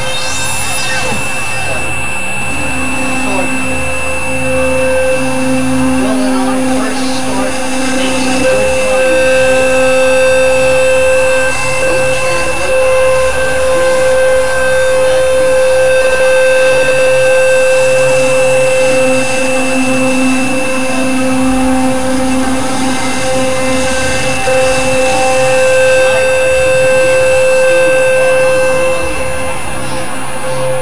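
Experimental electronic synthesizer drone: several held tones at different pitches over a dense, noisy texture, with a lower tone fading in and out twice.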